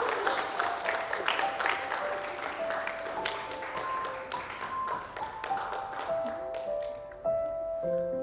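A small group applauding, the clapping thinning out and dying away over the first six seconds or so, over background music: a slow melody of single held notes.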